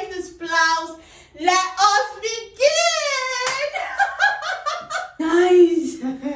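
A woman's lively voice, her pitch swinging widely, with a high rising-and-falling glide about three seconds in.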